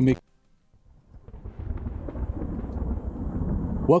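Thunder roll sound effect fading in: a low rumble that starts about a second in and builds steadily.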